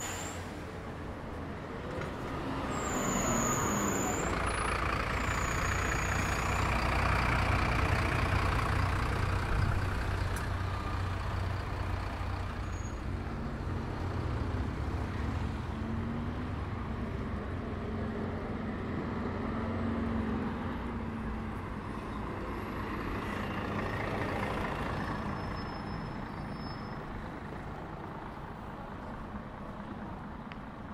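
Road traffic: a city bus passes close with a deep engine rumble, loudest about eight seconds in, with two brief high squeaks early on. More motor vehicles pass afterwards, with a steady engine hum in the middle and another vehicle going by later.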